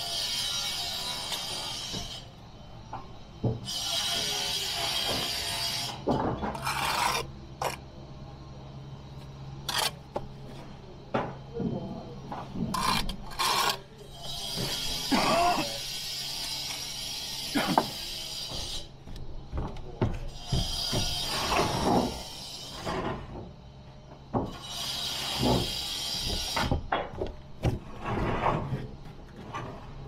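Bricklaying work: repeated scrapes of a steel trowel through mortar, each a second or two long, with sharp knocks of bricks and trowel between them, over background music.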